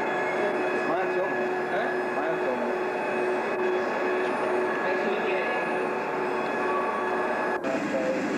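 London Underground train running, a continuous rumble of wheels and motors with a steady hum held throughout.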